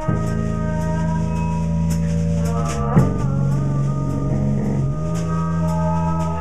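Live band playing an instrumental stretch: electric bass holding low notes under a drum kit keeping a steady beat, with one louder drum hit about three seconds in.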